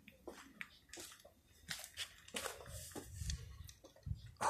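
Faint, irregular footsteps scuffing and crunching on a gritty dirt path.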